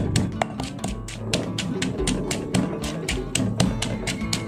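Stone pestle pounding shallots and lemongrass in a granite mortar: a quick, regular series of strikes, under background music.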